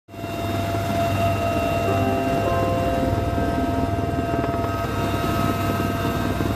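Steady engine and rotor noise heard inside the cabin of a military helicopter in flight, a whine of steady tones over a low drone, fading in at the start.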